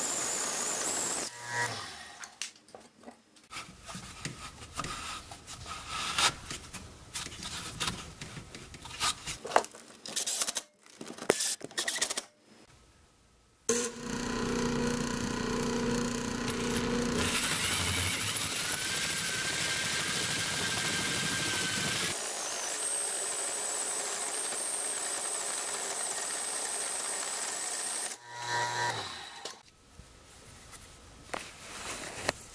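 A wood lathe spinning a wooden blank while a hole saw cuts into it, in several spliced stretches: a steady machine whine, a stretch of irregular scraping and sharp clicking as the saw teeth bite the wood, a brief silence a little before halfway, then steady machine running with a high tone.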